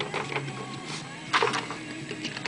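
Rustling and light knocking as a sheet of paper and craft supplies are handled, with a louder rustle about a second and a half in.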